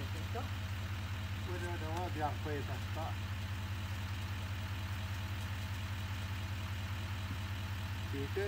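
Chevrolet Silverado 2500HD pickup's engine idling steadily, a low even hum that does not change.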